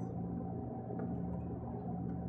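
Steady low room hum with a faint steady tone in it, and a faint click about a second in.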